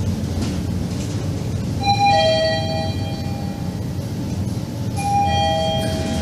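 Elevator's electronic two-note chime, a higher note then a lower one, sounding twice about three seconds apart, over the low steady running hum of the car.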